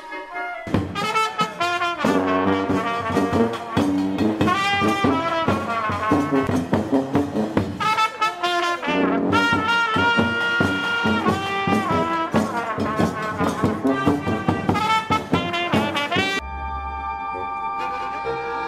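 Brass music with trumpets and trombones playing a lively, rhythmic tune. It starts abruptly just under a second in and cuts off sharply near the end, where quieter music takes over.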